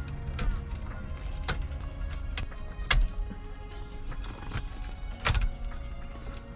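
Plastic wiring-harness plugs being unplugged from the back of a car's factory head unit: a handful of sharp clicks spread across the few seconds, the loudest near the end, over steady background music.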